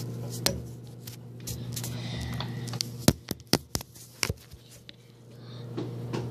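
Handling noise from a phone held in the hand: a click about half a second in, then a quick run of sharp clicks and taps about three seconds in, over a steady low hum.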